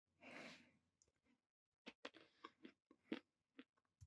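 Faint mouth sounds of a person eating: a short breathy rush of noise, then a run of irregular crunchy chewing clicks in the second half.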